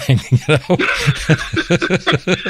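People laughing and chuckling in short, rapid bursts, partly over one another.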